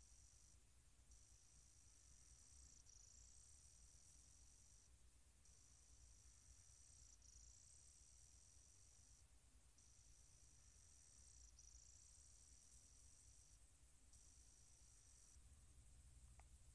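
Near silence: faint low background hum.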